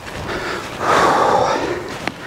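A person's breath close to the microphone: one long exhale, loudest about a second in, over a steady hiss.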